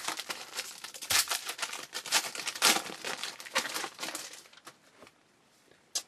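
Foil wrapper of a baseball-card pack being torn open and crinkled by hand, a dense crackle that thins out and stops about four and a half seconds in.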